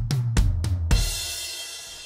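Electronic drum kit playing a short, conventional non-linear drum fill: about six quick drum and tom hits, then a cymbal crash with a kick about a second in, the cymbal ringing out and fading.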